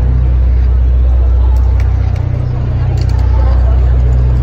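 Deep, steady bass drone of the concert's intro music through the venue sound system, with crowd noise over it.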